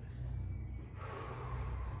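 A man breathing hard to catch his breath after exertion, with one long, noisy exhale about a second in, over a steady low rumble.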